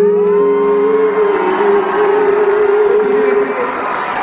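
Live concert singing: one long held vocal note that slides up at the start and ends shortly before the close, over the band, with a haze of audience noise underneath.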